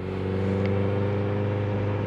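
A Honda CBR sport bike's inline-four engine running at steady revs while riding, heard through a helmet microphone as an even, low hum. It swells slightly in the first half second, then holds steady.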